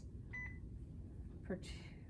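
Alaris infusion pump giving one short, high beep about a third of a second in, as a soft key beside its screen is pressed.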